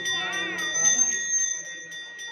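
Brass hand bell (ghanta) rung steadily during a lamp aarti, struck about five times a second with its ringing tones held throughout. A voice chants over it in the first half second.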